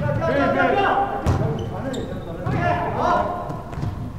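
Several people's voices calling out over each other, with one sharp smack of a volleyball about a second in.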